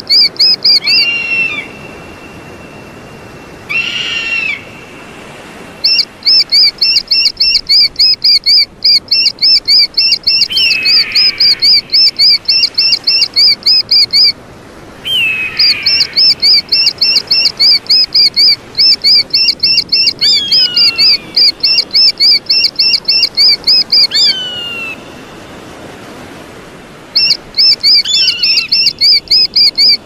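Eagle calling: long runs of rapid, shrill, high chirps, about four a second, broken by short pauses, with a lower call that slurs downward every few seconds.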